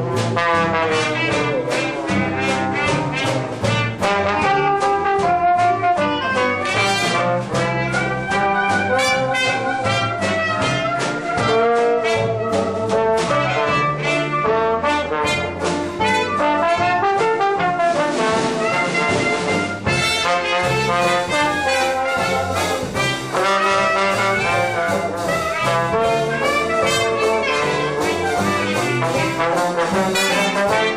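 Live traditional jazz band playing: trumpet, clarinet and trombone over a banjo, drum kit and double bass rhythm section keeping a steady beat.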